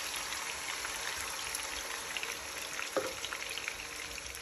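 Pork pieces frying in hot oil in a pan, a steady sizzle with fine crackles, with a quarter cup of water just added to the oil. A single sharp knock about three seconds in.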